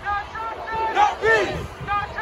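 Crowd of protesters chanting a short slogan together, the phrase repeating about every two seconds.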